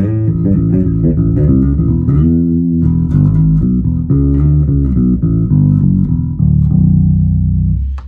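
MG Bass JB1 neck-through five-string electric bass with Bartolini pickups, played fingerstyle through a Demeter valve bass head and Ampeg speaker cabinets, switched to passive with the push-pull volume knob pulled: a continuous run of plucked low notes, ending on a longer held note that stops just before the end.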